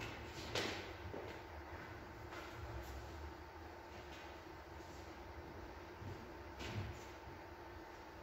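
Quiet hall room tone with a faint steady hum and low rumble, broken by a few soft knocks: one about half a second in, one near two and a half seconds, and one near seven seconds.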